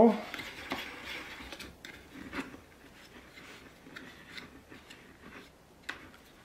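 Hand-turned ball mount being screwed into the threaded socket of a small plastic surround speaker: scattered small clicks and scrapes with quiet rubbing between them, and a sharper click near the end.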